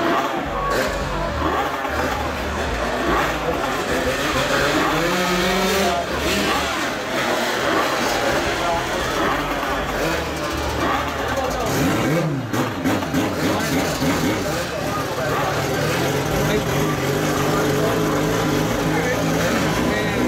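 125cc racing motorcycle engines idling and revving, with a rising rev about midway, under a voice in the background.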